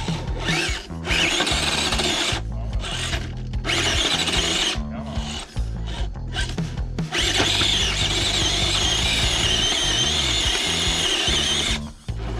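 Electric motor and geared drivetrain of a Losi Night Crawler 2.0 RC rock crawler whining as it works its tires over a wooden block and up onto a step. The whine comes in short stop-start bursts at first, then holds steadily for the last few seconds.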